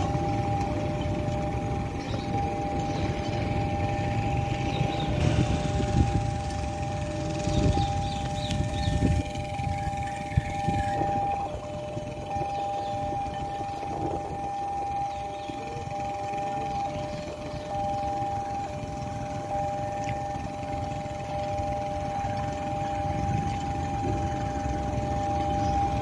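Railway level-crossing warning alarm sounding steadily in two held tones, over the low rumble of a KRL JR 205 electric commuter train running past, which fades after the first several seconds.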